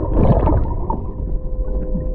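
Muffled underwater sound from a camera held below the lake surface: water churning and gurgling over a low rumble, with a faint steady hum.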